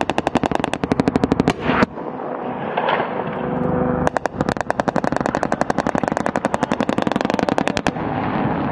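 Machine gun firing two long bursts of about ten rounds a second. The first ends with a louder crack about two seconds in; the second starts about four seconds in and stops just before the end.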